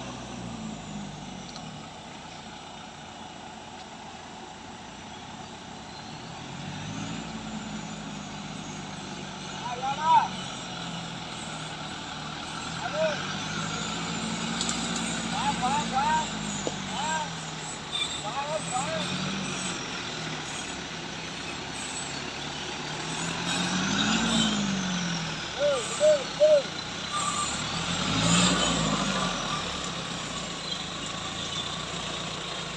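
Lifted off-road pickup's engine revving up and easing off again and again as the truck crawls through mud and tall grass on big mud tyres.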